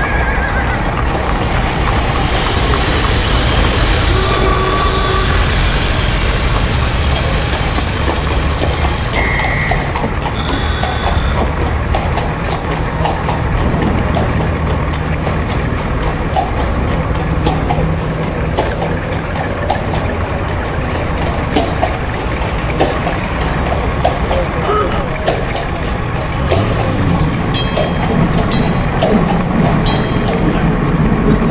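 Added street-ambience sound effects: a horse whinnying in the first few seconds and hooves clip-clopping, over a steady low rumble and the voices of a crowd.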